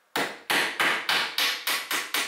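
Wood chisel being struck repeatedly, about four sharp knocks a second, as it chops down along a knife line into softwood to cut out the waste at the corner of a cross-shaped tenon.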